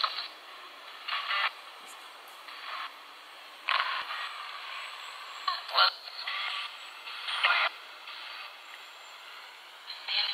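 Spirit box sweeping through radio stations: a steady hiss of static broken every second or so by short bursts of noise and clipped radio voice fragments. The loudest fragment, about six seconds in, is taken by the investigator for the name "Will".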